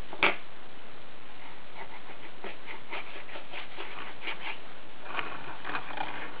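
Light clicks and taps of wooden puzzle pieces against a wooden peg puzzle board as a piece is worked into its slot, with one sharper knock just after the start and a scatter of faint taps through the rest.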